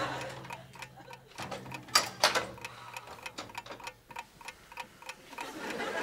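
Steady, regular ticking, a few ticks a second, with two louder clicks about two seconds in and a faint low hum that fades out early.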